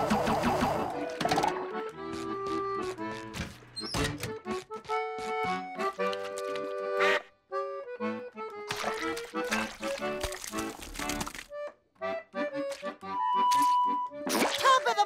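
Cartoon background music: a bouncy tune of short melodic notes, broken by two brief pauses, with a few short knocks.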